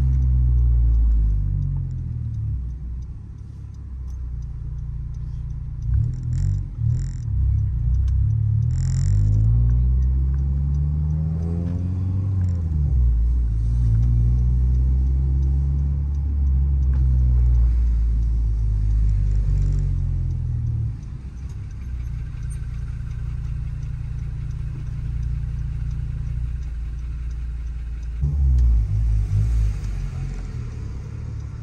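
Honda Civic Si's 2.4-litre four-cylinder engine through a 3-inch aftermarket exhaust and catless downpipe, heard from inside the cabin while driving in town. The engine note drops off, then rises as the revs climb about ten seconds in, holds steady, and eases back later on, with a short burst of revs near the end.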